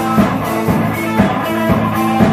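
A live rock band playing: electric guitar, bass guitar and drum kit, with a steady beat of about two strikes a second.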